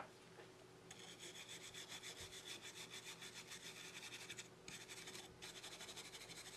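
Small brass wire brush scrubbing a phone motherboard wet with contact cleaner to clean off water-damage residue: faint, rapid back-and-forth strokes starting about a second in, with a pause of about a second shortly before the end before the scrubbing resumes.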